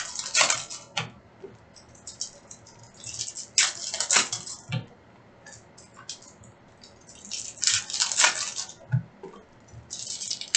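Foil trading-card pack wrappers crinkling and tearing as hobby packs are ripped open, in three bursts of about a second each, with quieter handling between.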